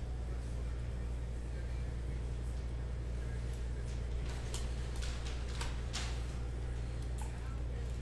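Baseball trading cards flicked and slid against one another by hand, with a few faint swishes and clicks in the second half, over a steady low hum.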